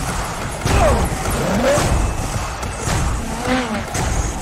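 Trailer soundtrack: dramatic score with heavy hits, about a second in and again near three seconds, and short sliding squeals like tires or engines between them.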